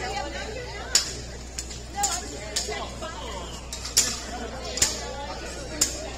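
Indistinct voices talking in a room, with sharp clicks or taps coming roughly once a second.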